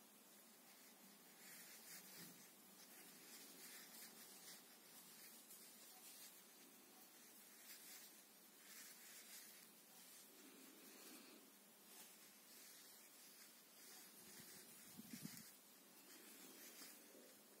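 Near silence with faint, intermittent rustling of yarn and a metal crochet hook as stitches are worked by hand.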